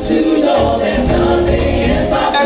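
Live gospel music: a vocal group sings long held notes in harmony over a band of keyboard, bass guitar and drums.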